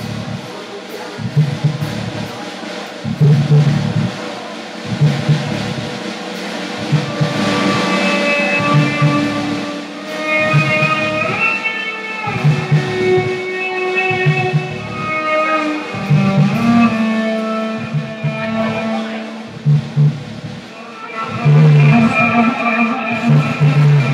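Live improvised jazz-funk from electric cello, keyboards and synthesizer, and drum kit. A low pulse repeats about once a second under held higher notes that slide in pitch now and then.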